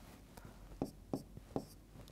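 Faint writing on a board: a few short taps and scratches of the writing tip against the board surface as a line of an equation is written.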